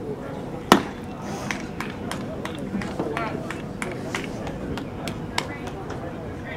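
A single loud, sharp smack about three-quarters of a second in as the pitched baseball reaches home plate, with background voices and scattered smaller clicks around it.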